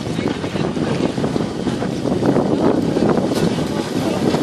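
Steady rushing noise of wind buffeting the microphone, mixed with the hiss of spray from a cable-towed wakeboard skimming across the water.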